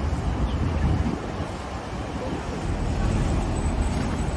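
Steady road-traffic rumble with wind buffeting the microphone, mostly low in pitch and with no single vehicle standing out.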